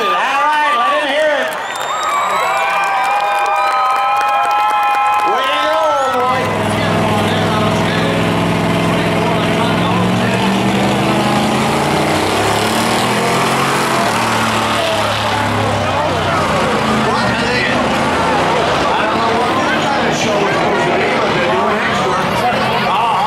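Tires squealing in a drift for about the first six seconds, a high wavering tone at times held steady. Then, after a sudden change, a V8 pickup engine runs and revs with a low, shifting drone.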